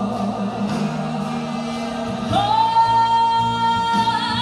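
A gospel song with instrumental accompaniment. About two seconds in, a woman's voice comes in on one long note that slides up and then holds.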